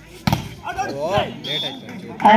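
A volleyball hit hard once, a single sharp smack about a quarter of a second in, followed by players' shouts.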